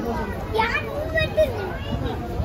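A crowd of people talking over one another, with high-pitched children's voices among them.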